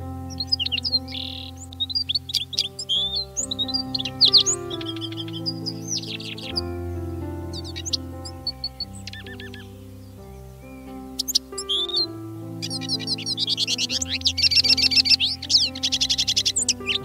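Siskins singing: quick chirps, twitters and short sweeping notes, turning into a dense run of fast trills near the end, over background music of slow, sustained chords.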